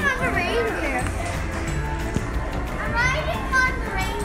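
A toddler laughing in the first second, then a short high-pitched rising squeal near the end.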